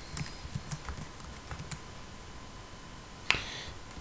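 Soft keystrokes on a computer keyboard while code is edited: a few scattered quiet clicks, then one sharper, louder click a little after three seconds in.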